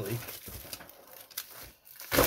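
Bubble wrap crinkling and rustling as it is handled and peeled off a package, with a few sharper crackles.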